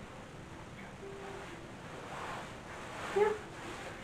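Low room tone with faint rustling from a silk dress as the wearer turns around, then a short spoken "yeah" near the end.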